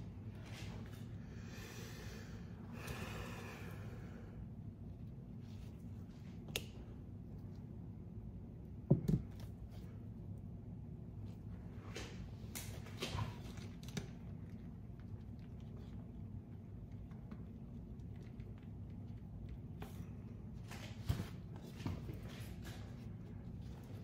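Quiet, steady low room hum with a few short, light knocks and clicks as a painted canvas is turned on a spinner; the loudest knock comes about nine seconds in. A soft breathy hiss runs from about two to four seconds in.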